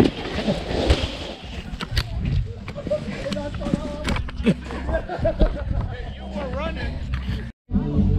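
Plastic sled sliding down a snowy slope: a rough scraping noise over the snow with repeated small knocks, and short shouting voices later on.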